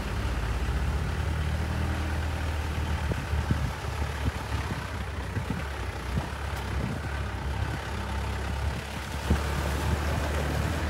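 A vehicle driving along a road, heard from inside: a steady low engine and road drone with a few brief knocks from bumps in the road.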